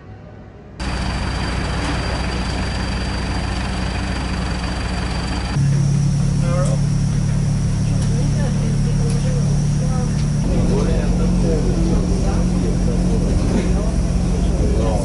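Airport apron bus's engine running with a steady low hum, heard from inside the passenger cabin, growing louder about five seconds in. Passengers' voices murmur faintly over it.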